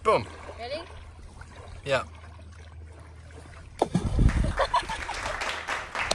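Short wordless vocal sounds, then from about four seconds in a sudden rush of wind buffeting the microphone, with a few faint ticks in it.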